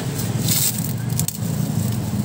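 Clear plastic stretch wrap on a spool of microphone cable being torn and peeled off, crackling in short irregular bursts over a steady low hum.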